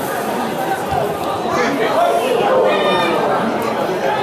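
Spectators in the stands talking over one another and calling out, a steady chatter of several voices that grows a little louder midway through.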